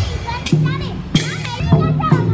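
Procession percussion troupe's hand drums and cymbals being struck, a pitched low drum sound with sharp strikes, beginning soon after the start, over children's voices.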